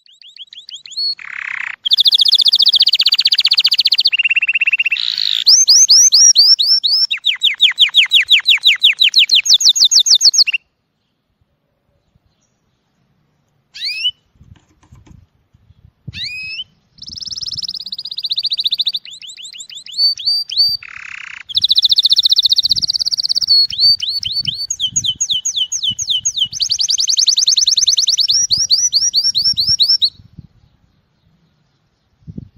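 Male canary singing a mating song of fast, rolling trills of quickly repeated high notes. The song breaks off about ten seconds in and resumes a few seconds later.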